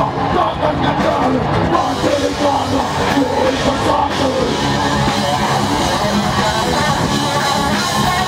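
Metal band playing live at full volume: electric guitars, bass and drum kit together in a dense, unbroken wall of sound.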